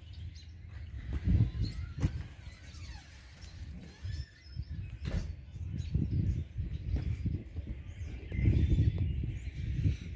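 Outdoor background noise: an uneven low rumble of handling and wind on a handheld microphone, with a couple of sharp clicks about two and five seconds in and faint bird chirps.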